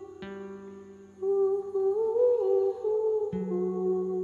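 A voice humming a slow melody that rises and falls gently, coming in about a second in, over sparse plucked guitar notes struck near the start and again about three seconds in.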